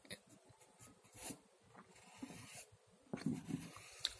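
Pencil drawing on sketchbook paper: faint graphite scratching in a few short strokes.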